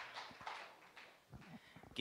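Faint footsteps on a stage floor, a few separate knocks a little past halfway through.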